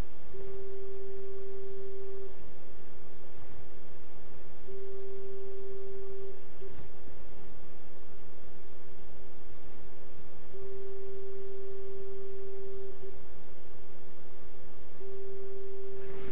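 A steady pure test tone, a little under 400 Hz, played by a speaker sealed in a thin, foam-lined sheet-metal box. It turns louder in several stretches of a second or two: the tone coming through as the antiphase exciters on the box walls, which partly cancel it, are switched off.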